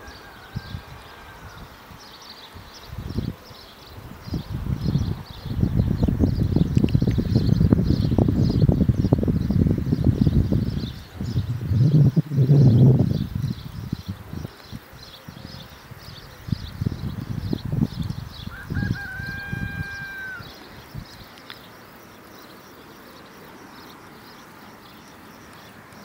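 Gusts of wind rumbling on the microphone, loudest in the middle stretch, over a steady high, fast chirring. Twice, near the start and again about 19 seconds in, comes a drawn-out, steady-pitched call about a second long.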